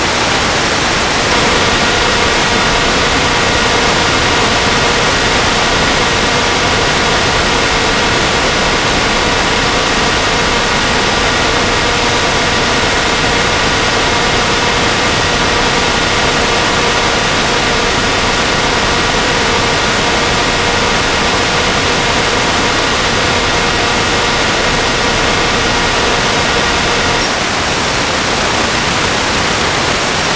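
Loud steady hiss, with a steady whine of several tones laid over it that starts about a second in and stops a few seconds before the end.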